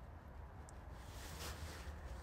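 Faint trickle of blue coolant being poured from a bottle into the cooling system's bleeder filler neck, over a low steady hum.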